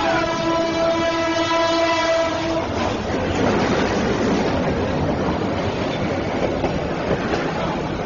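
A diesel locomotive's horn blowing one long, steady note that stops about two and a half seconds in, then the loud rumble and rattle of the train running over the tracks as it reaches the crossing.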